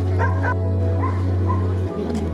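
A dog yelping three or four times in short high cries over steady band music with a continuous low drone. The drone dips briefly near the end.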